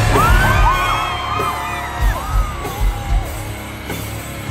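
Stage flame jets firing with a whoosh at the start, over live rock music, while the crowd whoops and yells. From about two seconds in, a run of evenly spaced low drum hits.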